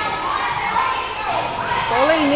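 Many children's voices calling and chattering at once in an indoor swimming pool hall, over a steady wash of swimmers splashing.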